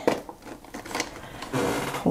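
Hand handling and smoothing a plastic stencil flat on watercolour paper: a few light taps and clicks, then a steady rubbing rustle near the end.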